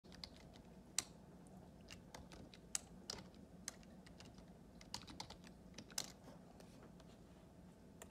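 Scattered, irregular clicks of a computer keyboard being pressed a key at a time, over a faint steady hum of the room.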